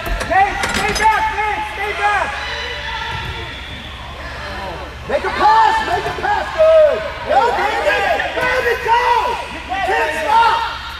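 Overlapping voices of spectators and players chattering and calling out, echoing in a large indoor hall, quieter for a few seconds in the middle. A few sharp knocks in the first second, and a steady low hum underneath.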